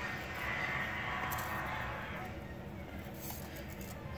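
Faint rustling of paper being handled and folded by hand, with a few small crackles, over a low background of television sound.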